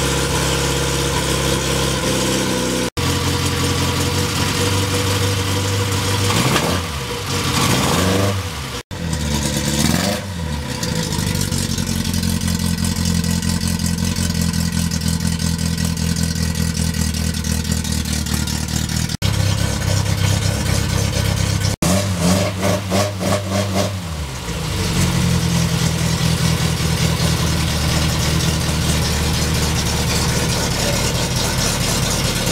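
1958 Austin-Healey Sprite Mk1's 948 cc BMC A-series four-cylinder engine, on twin SU carburettors, running steadily just after its first start following a full restoration. The revs are blipped up and back down a few times, twice in the first third and once past the middle, and the sound breaks off for an instant at a few edits.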